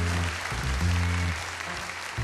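Live jazz piano trio music: a grand piano and a double bass play deep, held low notes that change about every half second, under a steady high wash of noise.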